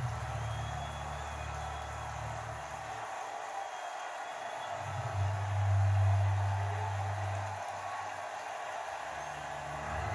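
Ballpark crowd cheering, heard off a television's speaker during the broadcast. The roar swells about five seconds in.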